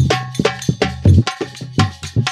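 Folk percussion interlude: a barrel drum beaten in a quick rhythm of deep strokes, with ringing metallic clinks over it.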